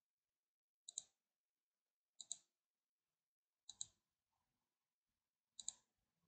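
Computer mouse button clicked four times, each click a quick pair of ticks, spread a second or more apart over near silence.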